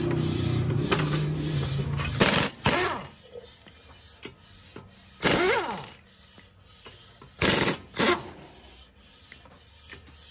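Pneumatic impact wrench spinning lug nuts off a car wheel in five short bursts, the longest about half a second and rising then falling in pitch. A steady hum comes before the bursts, in the first two seconds.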